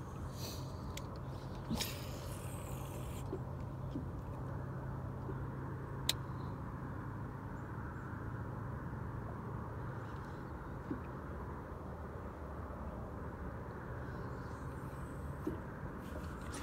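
A steady low hum over a rushing background noise, easing off for a few seconds in the second half. A few faint sharp clicks, the clearest about six seconds in.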